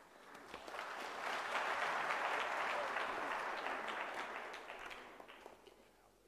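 Audience applauding: the clapping builds up about a second in and dies away near the end.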